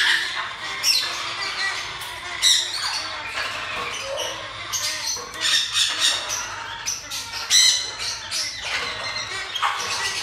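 Many caged parrots, lovebirds among them, squawking in shrill short bursts, over and over, with several calling at once.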